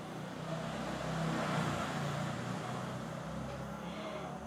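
A road vehicle passing by: a rushing noise with a low rumble that swells to its loudest about a second and a half in, then slowly fades.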